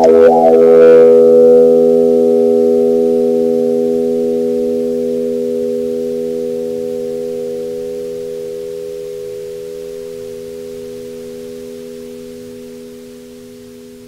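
Bowed electric guitar: the last notes of a busy passage, then a held chord left to ring out, fading slowly and evenly over about twelve seconds with a slight pulsing in one of its tones.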